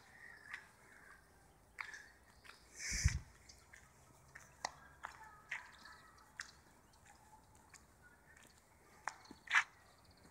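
Quiet outdoor scene with scattered small clicks and scuffs of footsteps on dry stony ground, and a louder muffled bump about three seconds in.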